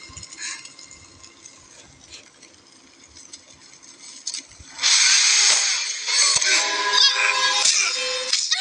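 Film soundtrack: a few quiet seconds with faint sounds, then about five seconds in a sudden loud crashing noise that carries on as the fight action resumes, with music.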